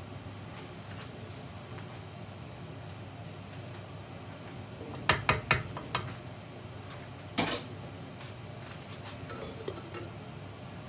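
A wooden spoon stirring curry in a stainless steel saucepan, knocking against the pan: a quick cluster of sharp knocks about halfway through and a single knock a couple of seconds later. There are faint clinks near the end as the glass lid goes back on the pot, over a steady low background hum.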